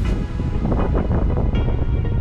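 Wind buffeting the microphone as a heavy low rumble, under background music; a few held musical notes come in about halfway through.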